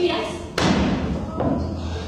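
Two thuds on a stage in a hall. The first, about half a second in, is sharp and loud with a long echo; a softer one follows about a second later.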